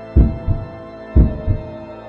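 Suspense sound effect: a heartbeat-like pair of low thumps about once a second over a held synthesized tone.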